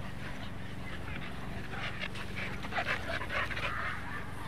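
Two dogs playing together on leashes, with a run of short dog vocal sounds in the second half.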